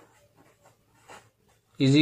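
A pen writing on paper: faint short scratching strokes as letters are written, with one slightly louder stroke about a second in. A man's voice starts speaking near the end.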